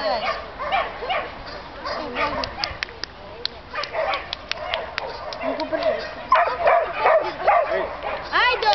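Dog barking and yipping again and again during its agility run, with voices in the background and a few sharp clicks about two to three seconds in.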